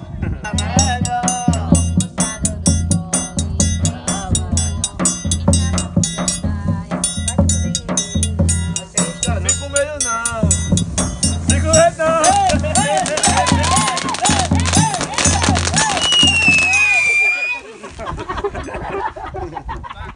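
Forró pé de serra rhythm on a zabumba bass drum and a triangle: a steady low drum beat under quick metallic triangle ticks, with a voice over them. A high whistling tone slides down just before the playing stops, about three seconds before the end.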